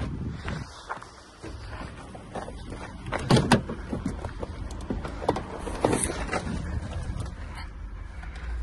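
A scatter of knocks and clunks from a person handling the driver's door and sitting down into a car's driver's seat, the loudest a quick pair about three and a half seconds in.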